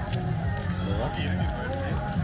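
Background music with a low bass line, over the chatter of passers-by.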